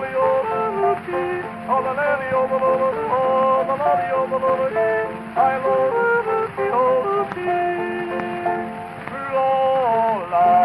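An early acoustic recording of a male voice yodeling, played from a 78 rpm record. Held notes break suddenly between pitches, over the record's steady hiss and crackle.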